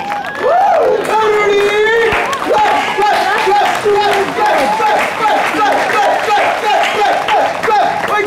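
A voice cheering in a run of short falling calls, two or three a second, over a few scattered hand claps.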